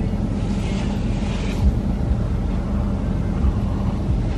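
Steady low hum of a parked car's engine idling, heard from inside the cabin.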